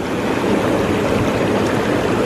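Coleman SaluSpa inflatable hot tub's air bubble jets running, churning the water with a steady rush of bubbling.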